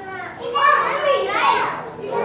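A young child's voice speaking briefly, the words indistinct.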